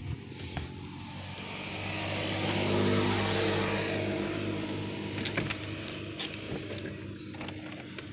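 A car passing by on the street, its engine and tyre noise swelling to a peak about three seconds in and then fading away. A few light knocks near the end.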